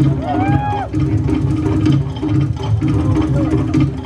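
Fast, steady Polynesian drumming for a Tahitian-style dance, with a voice calling out in a rising, then held, note near the start.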